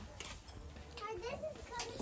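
Faint, indistinct voices of a child and adults talking in the background.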